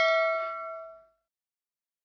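Subscribe-button animation's bell ding sound effect: a bright chime of several clear tones that rings and dies away within about a second.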